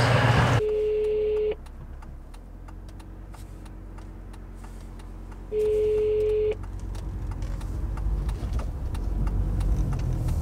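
Telephone ringback tone over a car's hands-free speakers: a steady single beep about a second long, heard twice about five seconds apart, as a call to home rings out. Under it runs the low hum of the car's cabin while driving, growing louder near the end.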